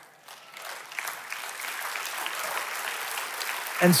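An audience applauding, the clapping growing louder over a few seconds.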